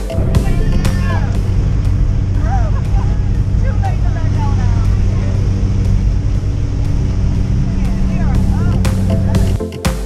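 Steady engine drone heard inside the cabin of a small jump plane in flight, with people's voices raised over it. The drone cuts out just before the end.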